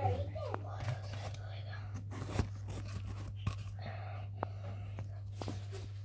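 Handling noise: hands brushing and tapping against the recording phone, giving scattered sharp clicks and rustles over a steady low hum.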